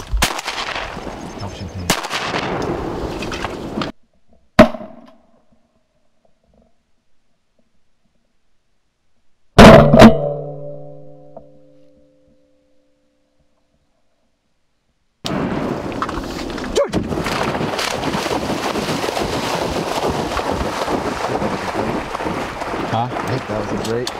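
Shotgun shots at flying ducks: one sharp shot about four and a half seconds in, then a quick pair of shots around ten seconds, each with a ringing tail and dead quiet between them. Steady wind-and-marsh background noise at the start and again from about fifteen seconds on.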